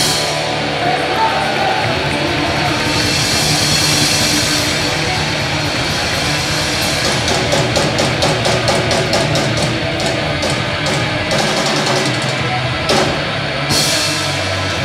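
Live rock band playing loud through a PA: distorted electric guitars, bass and a drum kit. Through the middle there is a run of fast, evenly spaced drum hits, about five a second.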